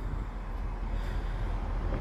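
Steady low outdoor background rumble with no distinct events, like distant traffic and light wind on the microphone.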